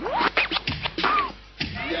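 Turntable scratching in a hip hop track: a record worked back and forth in quick strokes, with rising and falling pitch sweeps, dropping away briefly near the end.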